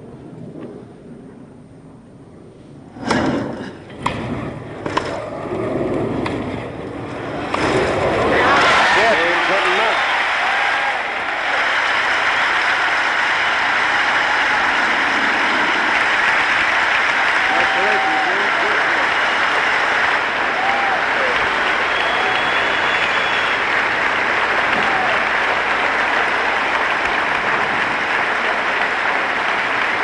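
Three or four sharp tennis ball strikes about a second apart, then a stadium crowd breaks into loud, steady cheering and applause with shouts, greeting the match-winning point.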